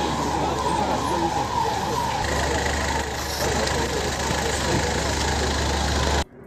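Car engine running close by as vehicles move slowly through a street gateway, with a low rumble that grows louder about two seconds in, over street noise and background voices.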